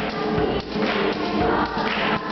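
Girls' choir singing an upbeat song with hand claps keeping the beat.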